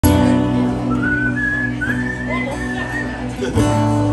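Acoustic guitar chords ringing under a high whistled melody that slides between notes; a fresh strummed chord comes in near the end.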